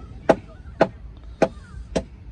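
A steady series of sharp knocks, about two a second, like strikes on wood.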